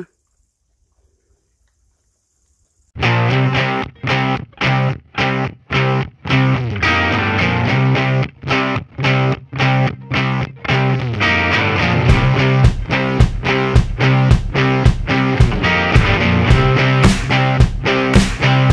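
Near silence for about three seconds, then rock music with distorted electric guitar and a steady beat starts abruptly and plays on in rhythmic stabs.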